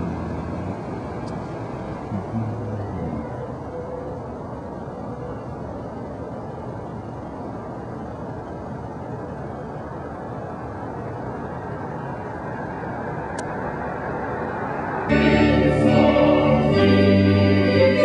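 Steady low rumble of a slowly moving car. About three seconds before the end, organ music starts abruptly and is much louder.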